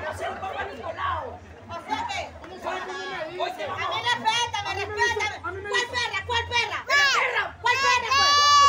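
Several people talking and calling out at once, their voices overlapping, with higher-pitched voices near the end.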